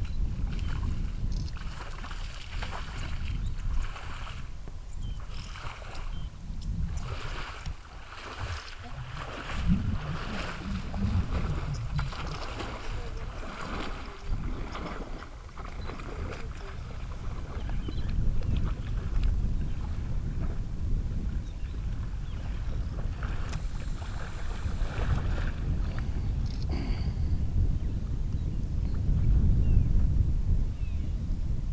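A hippopotamus wading into a waterhole, its legs and body sloshing and splashing through the water in repeated strokes through the first half, over a low steady rumble.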